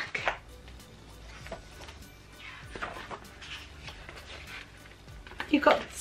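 Faint rustles and light clicks of paper pages being turned in a spiral-bound notebook, between stretches of a woman's talk at the start and near the end.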